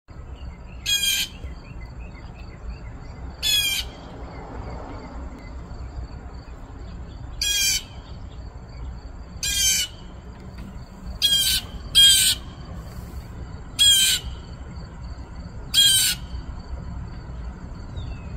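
Blue jay giving harsh alarm calls, a warning: eight short calls a few seconds apart, two of them close together about eleven and twelve seconds in.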